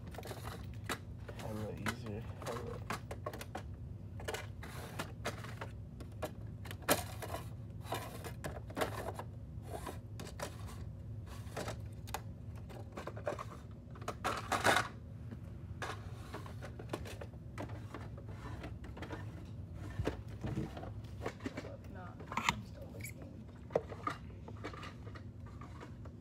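Irregular small clicks and taps of tools and parts being handled on an electronics workbench, over a steady low hum.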